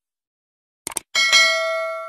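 Subscribe-button sound effect: a quick double mouse click, then a bell ding that rings out with several overtones and slowly fades.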